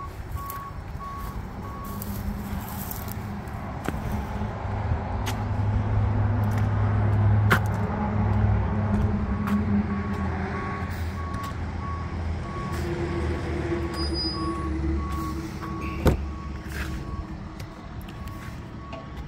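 A vehicle's reversing alarm beeping steadily at one pitch, falling silent for several seconds and then starting again, over the low rumble of a heavy vehicle's engine that swells in the middle. A single sharp click comes a couple of seconds before the end.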